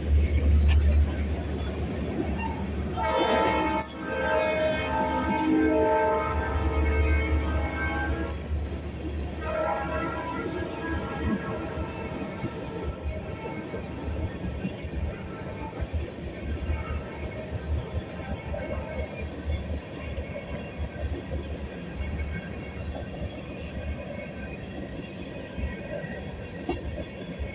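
Freight train of tank cars rolling past, with a steady low rumble of wheels on rail. A train horn sounds in the distance from about three seconds in, a long chord that breaks off near nine seconds, then sounds again more faintly for a few seconds.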